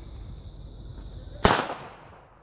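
A single firecracker going off on a gravel path: one sharp bang about one and a half seconds in, its report dying away over about half a second.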